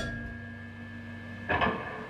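The band's last chord ringing out after the final hit of a jam: steady held tones from the electric guitar and amplifier fading away. The lower tone stops about one and a half seconds in, with a short, brief sound at the same moment.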